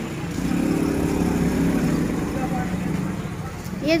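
A motor vehicle's engine running steadily close by, fading out shortly before the end.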